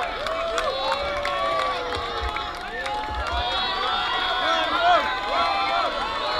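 Crowd chatter: many voices talking over one another at once, with no music playing.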